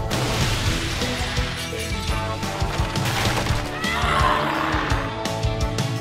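Cartoon soundtrack: background music under sound effects, with a sudden loud noisy rush at the start and a short high gliding cry about four seconds in.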